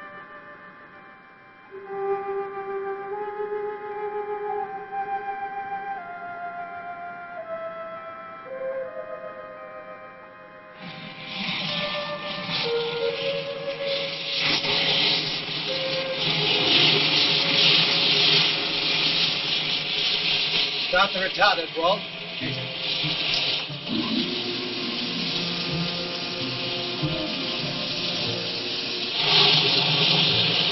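Film score: a slow woodwind melody stepping down note by note. About ten seconds in, a loud steady hiss of a rocket-motor sound effect comes in over the music and carries on, with a short warbling tone a little past the middle.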